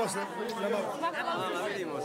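Several people talking at once, their voices overlapping in a chatter.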